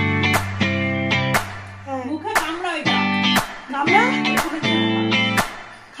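Background music led by plucked guitar: single notes struck about once a second, each ringing on and fading.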